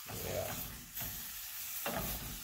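Diced mixed vegetables sizzling in butter in a stainless steel frying pan as they are stirred with a wooden spoon, with a light knock near the end.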